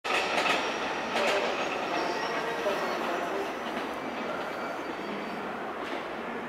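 Train running on the station tracks: steady wheel-on-rail noise with faint high-pitched wheel squeals, and a few sharp clicks over the rail joints in the first second and a half.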